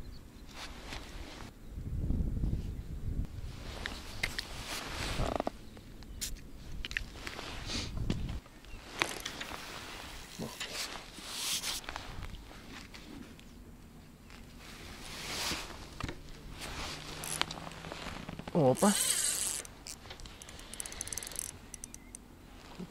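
Scattered rustling and light knocks of an angler handling his rod and tackle in a gusty outdoor breeze, with a short murmured voice sound near the end.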